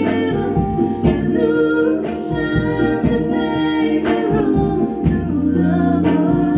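Live band music: a woman's lead vocal sung into a microphone, with backing vocals, over acoustic guitar, bass and a steady beat.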